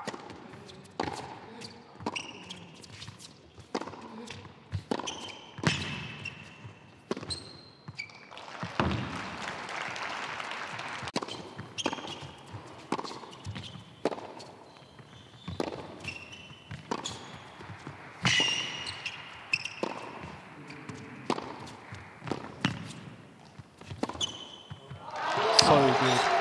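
Tennis rallies on an indoor hard court: racket strikes and ball bounces about once a second, with short sneaker squeaks between them. Applause swells near the end.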